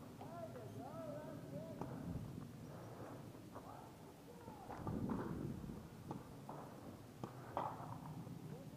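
Distant voices calling out across an open field, with a few sharp pops scattered through. About halfway through there is a louder low rustling swell.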